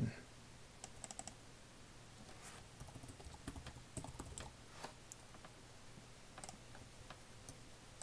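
Faint computer keyboard typing: short key clicks at an irregular pace, over a faint low steady hum.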